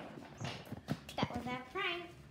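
A few sharp clicks or knocks, then a short voiced sound from a person near the end, its pitch bending up and down.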